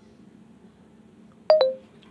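Smartphone alert chime: two quick tones, the second lower, ringing out briefly about one and a half seconds in, over faint room tone.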